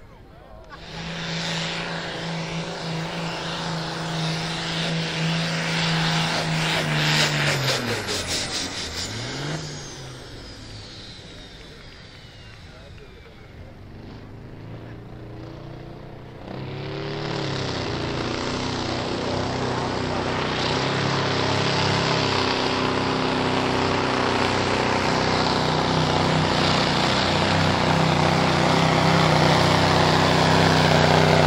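A modified pulling tractor's engine runs hard under full load, then its revs fall and drop away about eight to ten seconds in, with a high whistle falling as it winds down. From about seventeen seconds an Iveco semi-truck's diesel engine pulls the weight sled at full load, steady and growing louder to the end.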